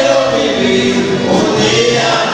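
Mariachi music with several voices singing together over the band.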